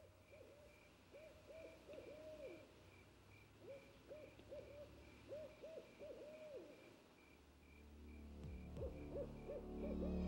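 An owl hooting faintly in short runs of quick arched hoots, with pauses between the runs. A faint, evenly repeating high chirp sounds underneath, and a low rumble swells in near the end.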